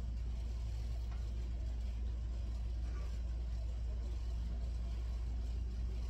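A steady low hum of background noise, with no other distinct sound.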